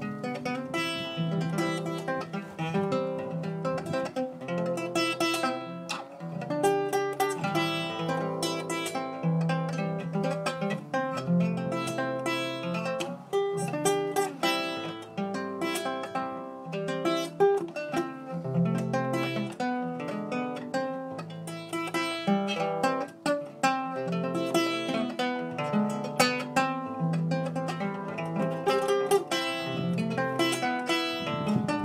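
Instrumental guitar music: a guitar playing a continuous run of plucked notes and chords.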